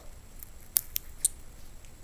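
A small clear plastic vial handled in the fingers, giving four light, sharp clicks in the first half.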